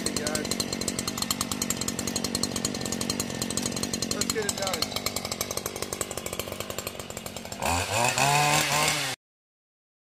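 Small gas engine of a Stihl long-reach hedge trimmer idling with a rapid, even putter. Near the end it is revved, the pitch rising and the sound growing louder, then it cuts off suddenly.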